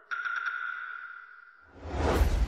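Scene-transition sound effect: a single high ringing tone that starts suddenly and fades out over about a second and a half. Near the end, a rising swell of noise leads into background music.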